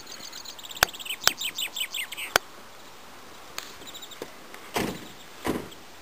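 Quiet outdoor ambience with three sharp clicks in the first two and a half seconds, a short run of high chirps about a second and a half in, and a soft rush of noise near the end.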